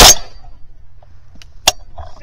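Shotgun firing at flying geese: a loud report with a ringing tail at the very start, then a second, shorter sharp crack about a second and a half later.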